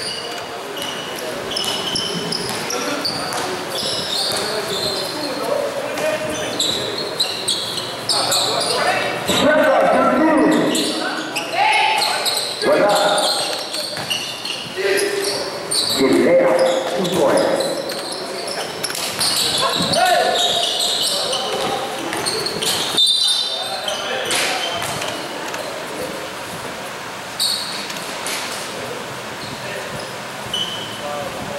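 Sounds of an amateur basketball game in a large gym: a basketball bouncing on the court, with players and spectators shouting and talking throughout, echoing in the hall.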